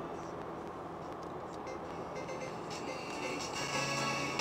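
Steady road and engine noise inside a car cabin at highway speed. Music comes in about two seconds in and grows louder toward the end.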